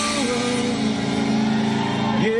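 Live rock band holding a sustained chord on distorted electric guitar, with the singer holding a long note over it.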